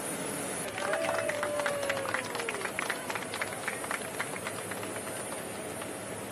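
A few people clapping, scattered hand claps starting about a second in and thinning out over the next few seconds, over a steady rushing background noise. As the clapping starts, a voice calls out one long note that falls away.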